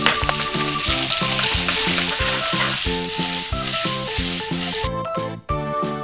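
Pork belly slices and julienned ginger sizzling in oil in a frying pan as they are stirred; the sizzle cuts off abruptly near the end. Background music with a steady beat plays underneath throughout.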